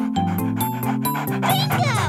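Children's song music with steady sustained notes, and a cartoon dog sound effect with falling pitch near the end.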